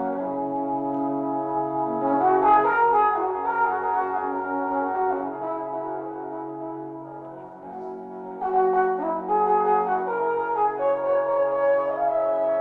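Alphorn playing a slow melody of long held notes. The phrase dies away about seven or eight seconds in, then a new phrase begins.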